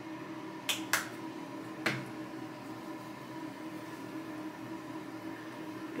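Three short, sharp plastic clicks from a skincare tube being handled and capped, all within the first two seconds, followed by a faint steady hum of room noise.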